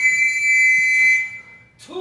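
A long, steady, high-pitched whistle blast that fades away about a second and a half in. It is the kind of work whistle that signals a stop to work. Near the end, a singer begins a held note.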